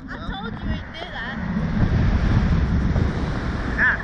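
Wind buffeting the microphone of a camera mounted on a swinging reverse-bungee ride seat, a steady low rumble. The riders laugh over it in the first second or so and again near the end.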